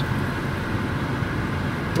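Steady road and engine noise heard inside a moving car's cabin, a low, even rumble with no distinct events.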